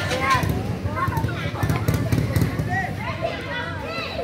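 A group of children chattering and calling out over one another.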